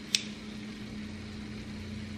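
Metal tongs click once against a steel stockpot as battered zucchini slices go into oil that is not hot enough to fry them, so there is little sizzle, over a steady low hum.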